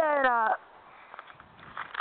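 A child's high-pitched singing voice draws out one falling note for about half a second, then breaks off, leaving only faint background sound.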